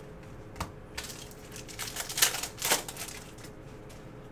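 A stack of Panini Prizm chromium trading cards being thumbed through in the hand: a single click about half a second in, then a run of quick, crisp slides and snaps of card against card for about two and a half seconds.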